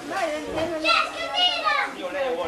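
Children's high-pitched voices calling out and chattering over one another as they play.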